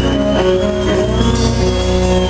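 Live band music: sustained pitched notes over a steady bass, with a run of repeated cymbal hits.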